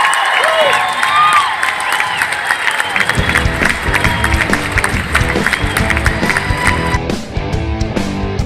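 Club crowd cheering and whooping as a live song ends. About three seconds in, a heavy rock track with distorted electric guitar and a driving beat comes in loud.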